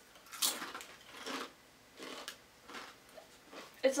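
Potato chips being bitten and chewed, a handful of short, crisp crunches spread through the few seconds.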